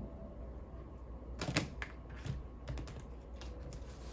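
A series of light, sharp clicks and taps of things being handled on a tabletop, starting about a second and a half in, over a low steady hum.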